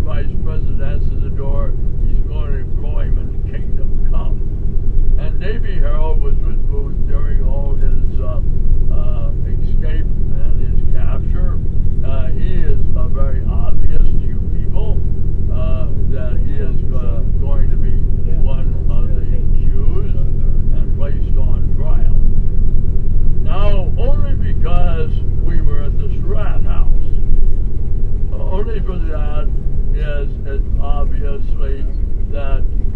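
Steady low drone of a running vehicle, with a person talking over it.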